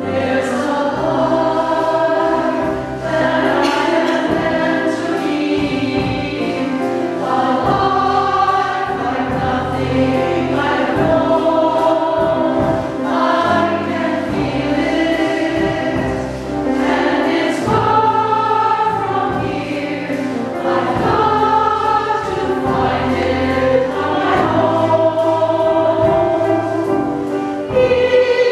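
Choir singing a show tune in harmony, with piano accompaniment underneath.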